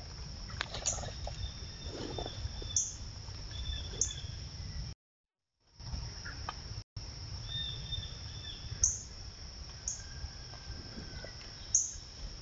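Trail-camera forest ambience: a steady high electronic whine and a low rumble, with several short bird chirps and a few sharp ticks scattered through. The sound drops out completely for about half a second near the middle, then again very briefly.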